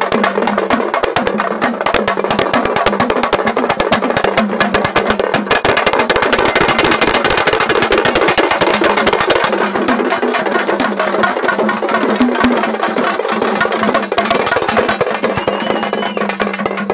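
Fast traditional festival drumming with many rapid strokes per second, thickest in the middle, over a steady low hum.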